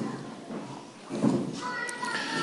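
Quiet lecture-hall room tone with a faint voice sound about a second in, then a brief steady high-pitched tone near the end.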